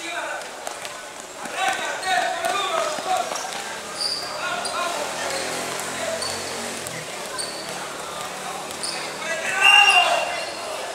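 A basketball bouncing on a hard outdoor court as young players dribble, with children's and onlookers' voices calling out over it; the loudest shout comes near the end.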